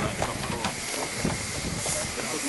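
Ride-on miniature steam railway train running: a steady hiss of steam with irregular clicks from the wheels over the rail joints.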